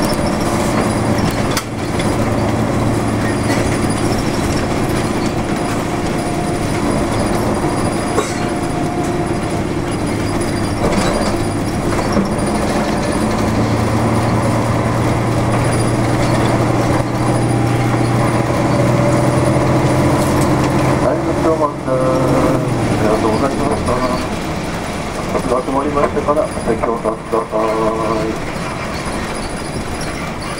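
1992 Nissan Diesel U-UA440LSN city bus heard from inside the cabin while driving: a steady diesel engine drone whose note strengthens about halfway through, then drops away about three-quarters through. After that a voice speaks over the quieter running noise.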